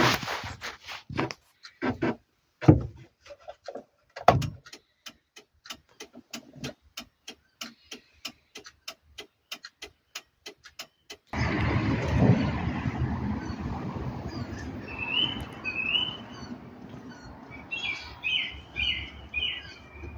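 A run of sharp, evenly spaced ticks, about four a second, with a few louder knocks. About eleven seconds in, it gives way suddenly to a steady outdoor rushing noise, with small birds chirping from a few seconds later.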